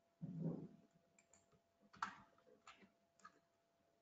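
Faint, sparse clicks of a computer keyboard and mouse being worked, about five over a few seconds, after a brief low muffled thump near the start.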